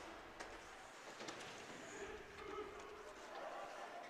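Faint ice-rink ambience during play: distant voices in the arena and a few light clicks, such as sticks and the puck on the ice.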